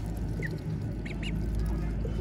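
Young ducks giving a few short, faint, high peeps while feeding, over a steady low rumble.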